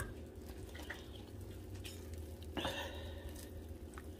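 Faint soft squishing as a wooden spoon presses into roasted cherry tomatoes and melted cheese in a glass baking dish, over a low steady hum.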